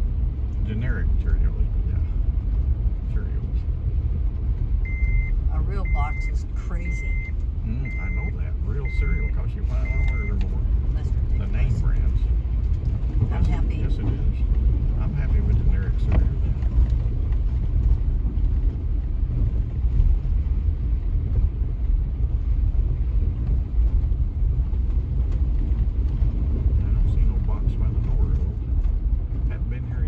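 Steady low rumble of a vehicle's engine and tyres heard from inside the cabin as it drives along a rutted dirt road. About five seconds in, a dashboard warning chime beeps six times, about once a second, all at one pitch.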